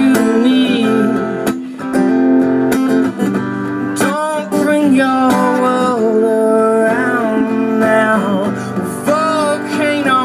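Live acoustic guitar strummed under sung vocal lines, amplified through microphones and a PA.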